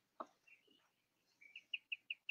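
Near silence: a faint click early on, then a faint run of short, high chirps, about six a second, in the second half.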